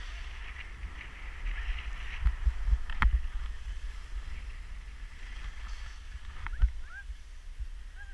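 Wind buffeting a helmet or body-mounted action camera's microphone while skiing downhill, over the hiss and scrape of skis on packed snow. A sharp knock comes about three seconds in, and another a little over six seconds in.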